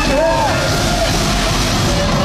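Loud live music played through a concert PA, recorded from the audience, with a pitched line arcing up and back down briefly near the start.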